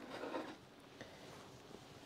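Faint handling noise: a brief soft rustle and rub in the first half second, then a low steady room tone.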